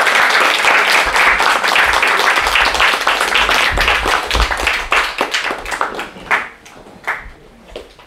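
Audience applauding, dense at first, then thinning out after about five seconds to a few last scattered claps.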